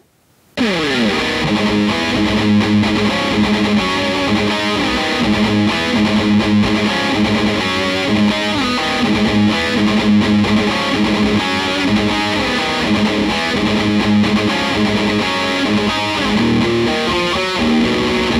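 Dean Razorback Blacktooth electric guitar played with heavy distortion through a Dime amplifier. It opens with a falling pitch glide about half a second in, then runs into fast picked riffs and note runs.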